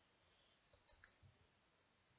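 Near silence: room tone with a few faint clicks about a second in.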